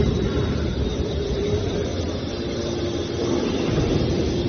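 Hydraulic scrap metal baler's power unit running: a steady low hum and rumble, with a faint steady whine joining about halfway through.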